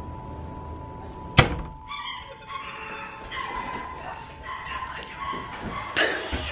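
A single loud bang of a hand striking a door about a second and a half in, followed by a dog barking and whining.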